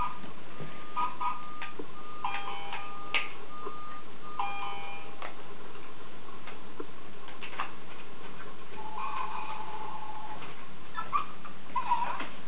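A battery-powered toy playing short electronic beeps that step between a few pitches, a little tune-like, through the first five seconds, then another held tone near the end, with scattered small clicks and knocks of the toy and its packaging being handled.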